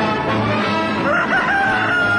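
Brass intro theme music, with a rooster crow laid over it about a second in: a rising call that then holds one long high note.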